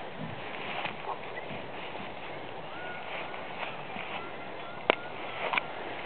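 Quiet outdoor background on a grassy field, with a few faint short high chirps in the middle and two sharp clicks near the end.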